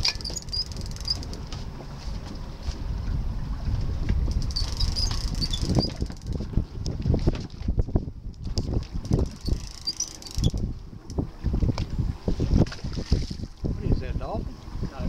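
Wind buffeting the microphone in gusty low rumbles, over water sloshing against the side of a boat.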